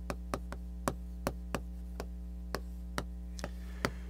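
Chalk writing on a blackboard: about a dozen short, sharp taps and clicks of the chalk at irregular intervals as characters are written, over a steady low electrical hum.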